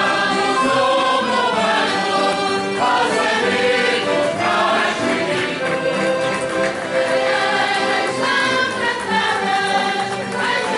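A Ranchos de Reis group singing a traditional Epiphany song (cantar os Reis) together in chorus, with accordion accompaniment.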